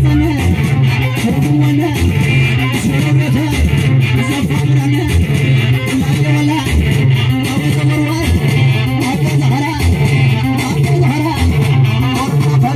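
Live Tigrinya band music played loud through a PA: electric guitar and bass guitar keep up a repeating riff over a steady beat.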